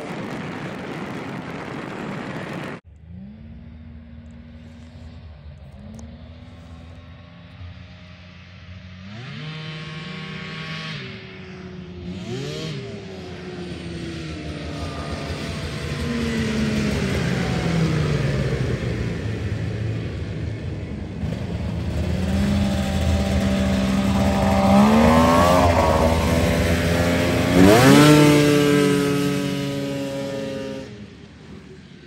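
Two-stroke snowmobile engine revving hard on ice, its pitch climbing and dropping back over several pulls. The last rise, near the end, is the loudest and highest.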